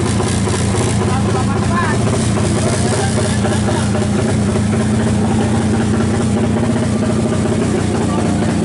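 A drag-race motorcycle engine of 350 cc idling steadily throughout, with voices over it.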